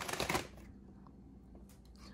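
Brief rustle and light clicks as foil pouches of instant mashed potatoes are handled in a plastic basket.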